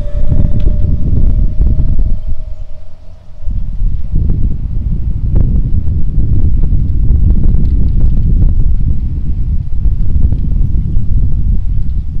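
A golf cart pulling away from close by, with a steady whine for the first two or three seconds. Heavy wind rumble on the microphone runs through the whole stretch.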